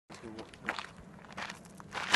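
A voice says a word, then soft footsteps and rustling in grass, with a few scattered scuffs.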